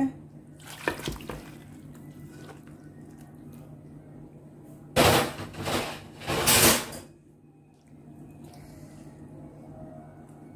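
Thick mutton curry being poured from a karahi into a glass serving dish, with three loud noisy bursts of pouring and scraping about five to seven seconds in. A steady low hum runs underneath.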